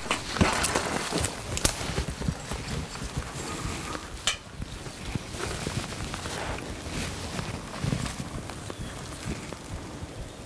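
A black bear scrambling on a metal ladder tree stand and through spruce branches: irregular knocks, scrapes and rustling, thickest in the first two seconds, with a sharp click about four seconds in.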